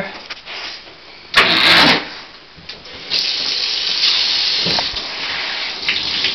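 A short loud rush of noise about a second and a half in, then from about three seconds in a steady hiss of water running from a handheld shower sprayer in a bathtub.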